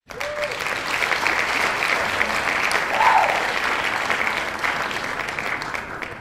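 Crowd applause, cutting in suddenly out of silence and beginning to fade near the end, with a brief voice-like call about three seconds in.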